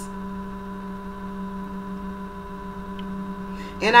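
A steady hum made of several held tones, one low and others higher, unchanging in pitch and level.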